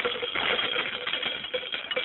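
Radio sound effect of a sink tap being run: a dense, continuous clattering rattle, as if hard objects were pouring out instead of water, set up for the gag that the water is getting harder. It starts suddenly and fades near the end.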